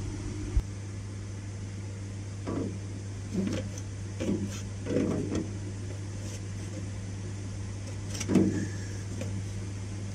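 Steady low hum of running network equipment and cooling fans in a server cabinet, with a few short, muffled handling sounds as a switch module is lined up for its chassis slot.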